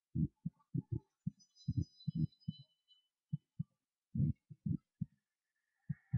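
A series of short, deep, low thuds at an uneven pace, with faint high thin tones ringing briefly between about one and three seconds in.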